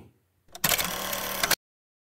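A sound effect laid in at an edit: a click, then about a second of dense rattling, clattering noise that cuts off abruptly into dead silence.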